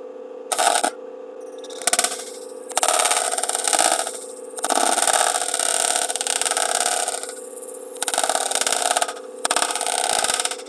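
Wire-feed (MIG) welder arc crackling: two brief tacks in the first two seconds, then four longer beads of one to three seconds each with short pauses between, as weld is added to fill in and beef up a sidestand extension joint. A steady hum runs underneath.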